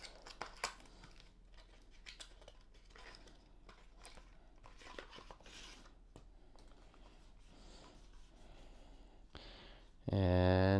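Faint handling noise of a cardboard box being opened and a plastic keyboard stand slid out: soft crinkling and rustling with a few light clicks near the start.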